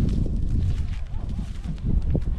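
Footsteps and cattle hooves crunching and rustling on dry rice-straw stubble, over a steady low rumble.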